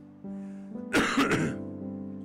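Soft sustained chords on an electric keyboard. About a second in they are broken by a loud, short throat clearing in a few quick rasps.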